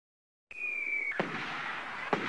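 Firework sound effect. About half a second in, a thin whistle starts, falling slightly in pitch. A sharp bang comes just over a second in, followed by steady crackling hiss with scattered small pops.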